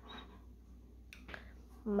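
Quiet indoor room tone with a couple of faint, sharp clicks about a second in. A woman's voice starts right at the end.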